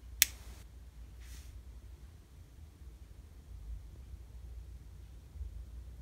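A single sharp click of a small rocker switch being flipped, switching on the laser power meter, followed by a faint brushing sound about a second later.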